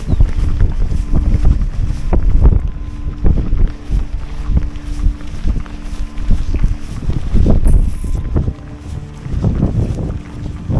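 Wind buffeting the microphone in uneven gusts, a deep rumbling noise that rises and falls every second or so.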